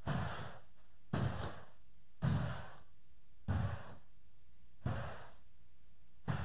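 A man huffing heavy breaths or grunts straight into a handheld microphone, five in a row about a second apart, each with a low pop on the mic: comic panting, as if out of breath.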